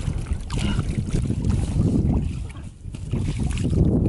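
Wind buffeting the microphone: a loud, irregular low rumble that eases briefly about two and a half seconds in.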